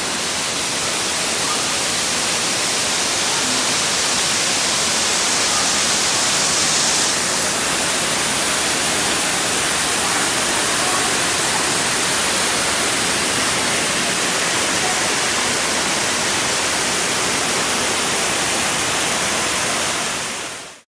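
Small waterfalls in an artificial rock exhibit pouring steadily into a pool, heard close up as a constant loud rush. It is a little brighter for the first seven seconds.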